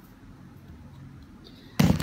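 Faint, steady room noise, then a sudden loud bump near the end.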